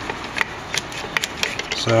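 A few small, sharp clicks and taps from handling, over a steady background hiss, followed by a man's voice near the end.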